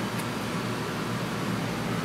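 Steady fan noise: an even hiss with a low hum under it, unchanging throughout.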